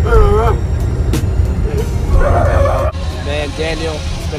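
Steady low rumble of a school bus on the move, heard from inside the cabin, with voices calling out over it. About three seconds in the rumble drops back and a person starts talking.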